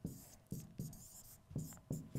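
Writing strokes on the glass of an interactive touchscreen whiteboard: a quick run of short, faint scratchy taps, about six in two seconds, as letters are drawn.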